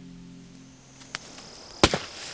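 Sustained music notes fade out at the start, then a fire of dry brush crackles: a few small snaps about a second in and one loud, sharp pop near the end.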